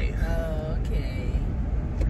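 Car cabin noise while driving: a steady low rumble of the engine and road, with a brief murmured voice about half a second in.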